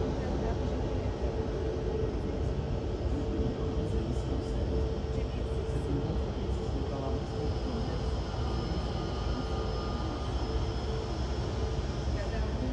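Airbus A320neo airliner taxiing on its engines at idle: a steady whine over a broad, even rumble, with a fainter high whine growing in the second half.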